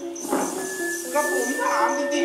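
Thai piphat ensemble music accompanying a staged dance-drama, with a long steady high note entering about half a second in over a stepping melody, and voices over it.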